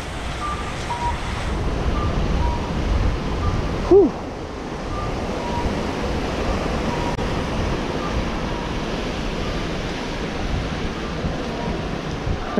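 Steady outdoor rush with wind buffeting the microphone, plus faint short beeps that repeat throughout at two alternating pitches.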